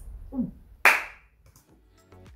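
A short voiced exclamation, then one sharp hand clap a little under a second in.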